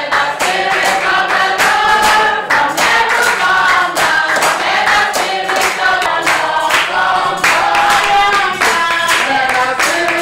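A church congregation of men and women singing a chorus together, with a steady rhythm of hand-clapping.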